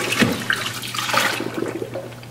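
Dirty wash water being dumped out of a bucket: a rushing pour and splash that tapers off over the two seconds.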